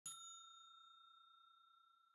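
A single faint ding struck once at the start, its clear ringing tone fading away slowly: a logo chime.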